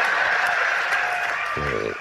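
Live stand-up comedy audience applauding and laughing in response to a punchline, a steady wash of clapping that dies away near the end as a man's voice comes back in.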